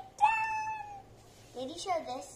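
A child's long, high-pitched, meow-like squeal, held for most of a second and sliding slightly down in pitch, followed near the end by a short burst of childish voice.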